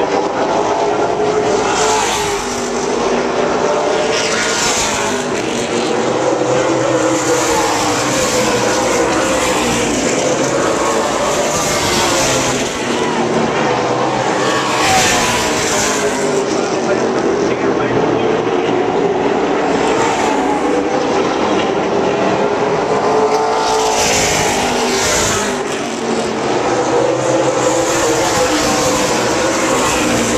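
A pack of super late model stock cars racing on an oval, their V8 engines running loud and continuous. The engine pitch rises and falls as the cars come around, swelling as the field passes closest every several seconds.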